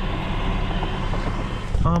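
Steady vehicle and street noise heard from a car, an even hiss over a low hum, with no distinct knocks or rhythm. A man's voice comes in right at the end.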